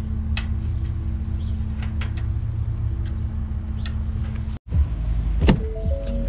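Pickup truck engine idling steadily, with a few light metallic clinks from the trailer hitch pin, clip and safety chains being handled. The sound cuts out for an instant about three-quarters of the way in, then the idle resumes with a couple of knocks near the end.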